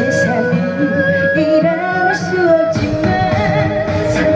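A woman singing a Korean trot song live into a handheld microphone over amplified backing music, holding long notes with a wavering vibrato.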